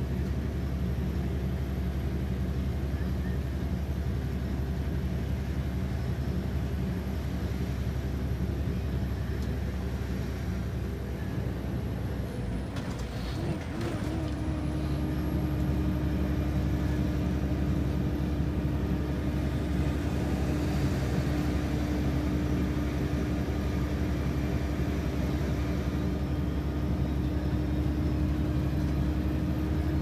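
Steady engine and road noise of a vehicle being driven, with a short dip about halfway through, after which a steady hum sets in and holds.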